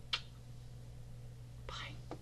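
A short lip smack of a blown kiss, followed near the end by a soft whispered, breathy sound, over a steady low hum.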